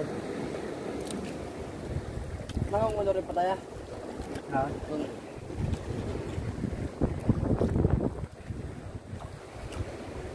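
Wind buffeting the microphone over open sea, with water washing around a small outrigger boat. There are low knocks and rustling as a nylon gill net is hauled over the side and picked by hand, with a couple of heavier knocks in the second half.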